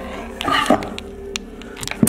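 Scattered clicks and crunches of broken tile and glass debris underfoot and being handled, with a brief breathy vocal exclamation about half a second in, over a faint steady drone.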